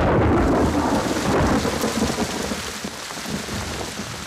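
Thunder rumbling over steady rain. The rumble is loudest at the start and dies away over the next few seconds.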